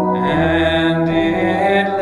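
A man singing a slow hymn in long held notes, with sustained instrumental accompaniment underneath.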